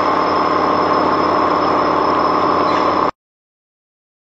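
Automatic hydraulic laminating machine running: a steady mechanical hum with a thin high whine over it, which cuts off abruptly about three seconds in.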